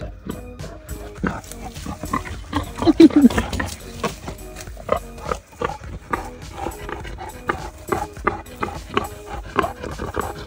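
A wild boar rooting in the dirt at close range: short, irregular rustles and snuffles, with one louder call falling in pitch about three seconds in.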